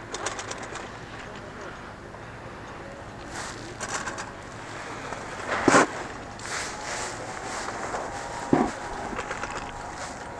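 Snowboard sliding and scraping over packed snow on the move, with rustling and buffeting on the camcorder's microphone from fabric hanging at the lens, and two louder thumps, one a little past the middle and one near the end.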